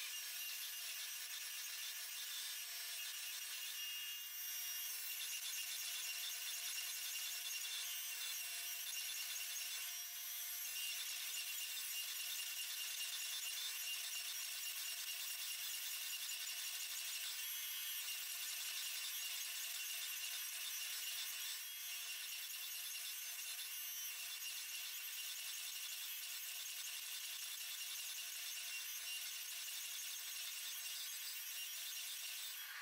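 Faint, steady rasping mechanical noise of a forging press running while its fullering dies squeeze a hot Damascus steel billet, with no distinct strikes.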